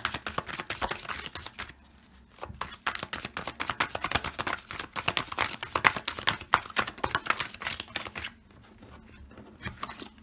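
A Gilded Tarot deck being shuffled by hand: a rapid run of small card-on-card flicks and clicks. It pauses briefly about two seconds in and goes quieter near the end.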